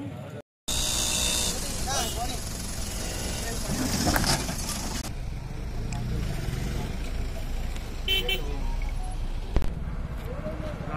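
Roadside traffic noise with people talking, and a car horn tooting briefly near the end.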